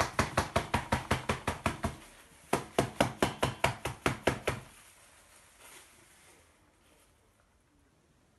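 Hand tapping rapidly on the side of a plastic flower pot to settle freshly added potting soil around the repotted monstera. Two quick runs of about a dozen sharp knocks each, around six a second, with a short pause between them about two seconds in. The tapping stops a little before the halfway point.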